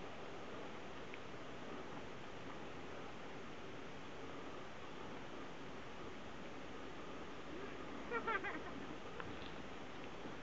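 Quiet, steady outdoor hiss of open-air ambience, broken about eight seconds in by a brief pitched call lasting under a second.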